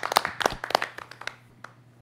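A handful of people clapping their hands, the claps thinning out and fading away in the last half second.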